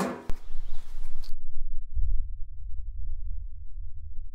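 Wind buffeting an outdoor microphone: a loud, unsteady low rumble with nothing higher above it, starting after a sharp click near the beginning.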